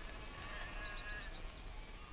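Faint outdoor ambience. A distant drawn-out animal call lasts about a second, over runs of short high-pitched chirping.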